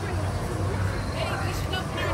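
People's voices over a steady low rumble, with a higher voice coming in about a second in.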